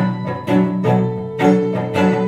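Live acoustic music with hammered dulcimer: fresh notes struck every half second or so, ringing over sustained low notes.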